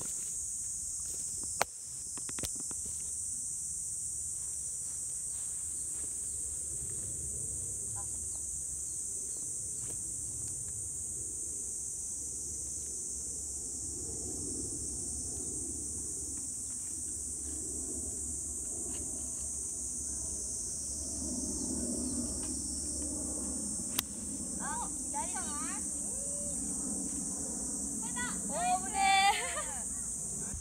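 Steady high-pitched drone of a summer insect chorus over an open golf course. A sharp tap about one and a half seconds in, and a crisp click about 24 seconds in as the golf club strikes the ball on a short iron shot to the green.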